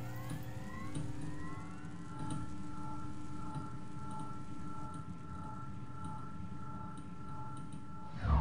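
Electronic intro sound design: a steady synthesized drone of several held tones, with a few rising sweeps in the first two seconds.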